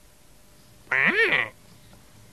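A single duck quack, about a second in and half a second long, its pitch rising and then falling.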